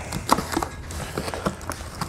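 A utility knife slitting packing tape on a small cardboard box, then the box flaps pulled open: a handful of short, sharp, irregular cardboard taps and knocks.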